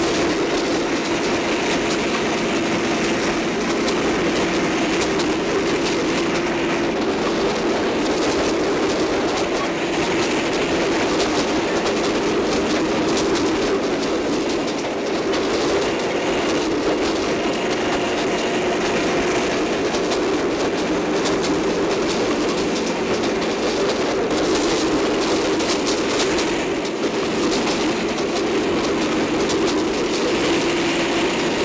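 Train running at speed: a steady, unbroken rumble with many faint clicks.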